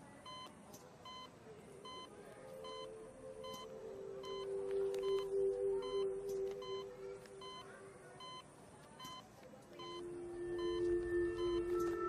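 Hospital patient monitor beeping steadily, one short high beep a little more often than once a second, the heartbeat signal of a patient in a coma. Soft music with long held notes comes in about two seconds in, fades, and returns near the end.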